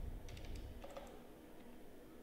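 A few faint keystrokes typed on a computer keyboard.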